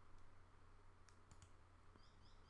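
Near silence with a few faint computer mouse clicks a little after a second in.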